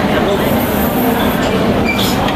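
Loud, steady din of a crowded room: a continuous rumble with overlapping voices mixed into it.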